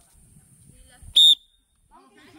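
One short, sharp blast of a referee's whistle a little over a second in: the start signal for a tire-flip race.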